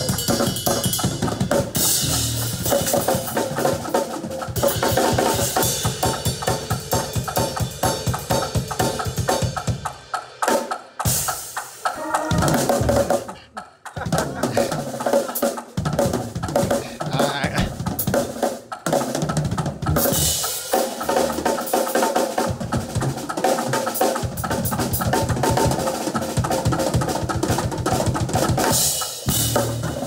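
Two acoustic drum kits played together in a gospel drum shed, with keyboard: fast, dense snare, tom and cymbal fills over bass drum. About ten to fourteen seconds in the playing breaks into short stop-start hits, then the full groove comes back.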